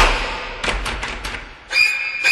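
A sudden loud thud that trails off in a low rumble, followed by a few softer knocks. Near the end, sharp repeated pitched music hits begin.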